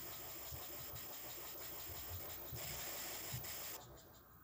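Steady tape hiss from VHS playback, with faint, irregular low thumps underneath.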